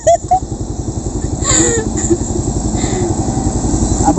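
A motorcycle engine idling close by with an even low pulse, while a loaded cargo truck's engine approaches, so the engine noise grows slowly louder.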